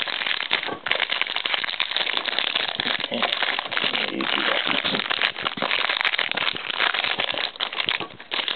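Clear plastic wrapping crinkling as it is handled and pulled off a stack of trading cards: a dense, continuous crackle of small clicks.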